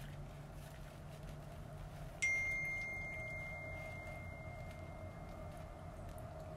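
Electronic beep: a single high tone that starts suddenly about two seconds in and slowly fades away over the next three seconds or so.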